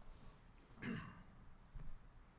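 A man clearing his throat once, about a second in, faint through the room's microphones, with a soft thump near the end.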